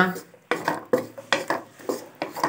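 Wooden spatula scraping and knocking against a non-stick kadai while stirring chopped onions in oil, a run of irregular knocks starting about half a second in.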